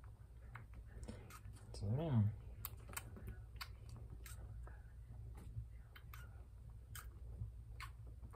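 Quiet, irregular wet clicking from a three-week-old baby squirrel suckling formula from a feeding syringe's nipple tip.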